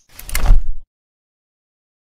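Logo-intro sound effect: a swelling whoosh with a deep booming hit at its peak about half a second in, cut off abruptly a little later.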